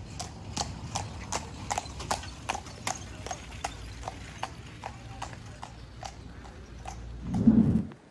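A carriage horse's hooves clip-clopping on cobblestones as a horse-drawn carriage passes, about three hoofbeats a second, thinning out after about six seconds. A short, loud, low burst of sound comes near the end.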